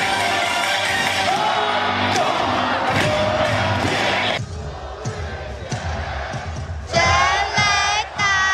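Stadium cheer music with a crowd, cutting off sharply about four seconds in. Crowd noise follows, and near the end comes a loud drawn-out shouted call.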